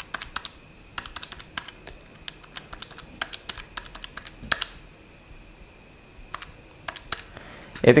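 Keys of a handheld electronic calculator being pressed: a run of small, quick, irregular clicks that thins out after about five seconds.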